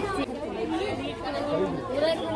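People talking: several voices in overlapping chatter, with a short spoken phrase at the very start.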